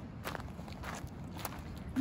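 Footsteps on loose river stones and gravel, a few irregular crunching steps.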